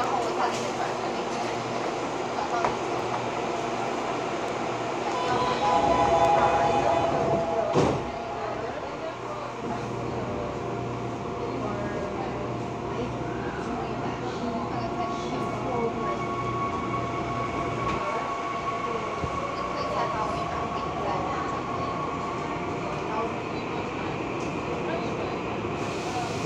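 Seoul subway train standing at a station with its running hum. A louder stretch of steady tones ends in a sharp thump about eight seconds in, as the doors shut. From about halfway through, the traction motors whine steadily as the train pulls away.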